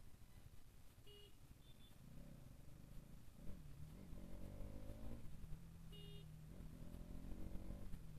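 Bajaj Pulsar NS200's single-cylinder engine running faintly at low speed in traffic, rising in pitch twice as the throttle opens. A few short high beeps sound about a second in and again around six seconds.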